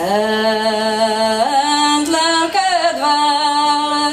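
A single voice singing a slow, unaccompanied melody in long held notes, stepping up in pitch about one and a half seconds in and moving again near three seconds.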